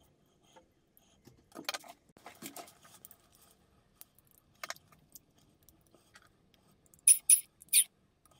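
Small 3D-printed plastic case parts being handled and fitted together by hand: scattered rustles and clicks, then three sharp, loud clicks close together near the end.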